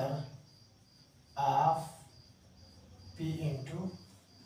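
A cricket chirping, a thin high tone pulsing a few times a second, with two short bursts of a man's voice, about one and a half and three and a half seconds in.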